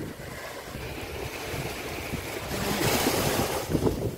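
Sea surf washing onto a sandy beach, with wind on the microphone. The wash swells louder a little past halfway through, then eases.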